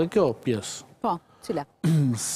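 A man speaking, with a short pause about halfway through.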